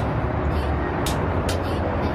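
Steady low rumble of outdoor street traffic, with faint background music ticking a beat about twice a second.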